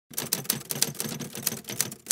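Typewriter sound effect: a rapid, irregular run of clacking keystrokes, about seven a second.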